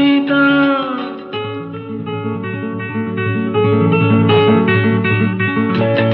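1980s Tamil film song in an instrumental interlude. A held melody note ends about a second in, then plucked strings play quick, evenly repeated short notes over a steady bass line.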